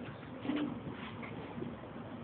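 Low background murmur of a bar room, with a short low hum about half a second in.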